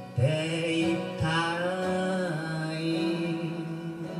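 Live band music: a male voice singing long held notes over a 12-string acoustic guitar, organ, bass guitar, electric guitar and drums, with a couple of sharp drum hits in the first second or so.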